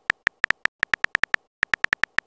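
Rapid, short electronic keypress clicks from a texting-story app's on-screen keyboard, about eight a second with a brief pause near the middle, as typed text is deleted letter by letter.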